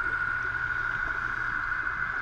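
Steady underwater ambience picked up by a camera at a dive site: a constant high-pitched whine over a low, even hum, with no bubble bursts.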